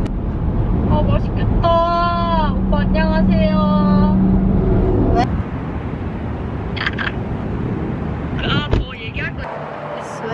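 Car cabin road noise, a steady low rumble under conversation, that drops away about five seconds in.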